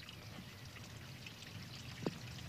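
Water trickling and pouring into a roadside drain grate, faint and steady.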